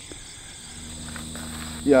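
Crickets chirring steadily in a high pitch, with a low steady hum coming in about half a second in.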